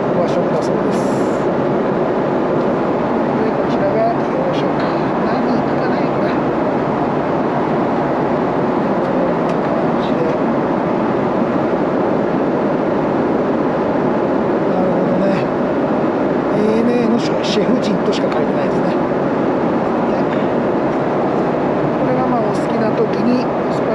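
Steady roar of a Boeing 777-300ER airliner cabin in flight: engine and airflow noise. A few short rustles of the paper menu booklet's pages being handled near the start and again towards the end.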